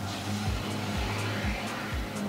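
Toyota 4Runner's power rear tailgate window lowering, its electric window motor giving a steady hum, under background music with a steady beat.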